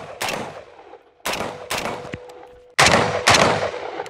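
AR-15 rifle fitted with a muzzle brake firing six shots in three quick pairs, each shot trailing off in echo. A steady ringing tone lingers after the hits, as a struck steel target rings.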